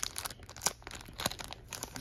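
Thin clear plastic bag crinkling and rustling in irregular crackles as a Pokémon card in its sleeve is slid out of it by hand.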